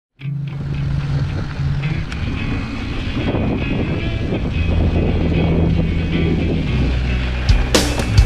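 Music soundtrack with held bass notes that shift in pitch every second or two; sharp hits come in near the end.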